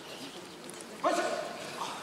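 Kendo kiai: a sudden, loud, held shout from a player about a second in, lasting about half a second, with a shorter shout near the end.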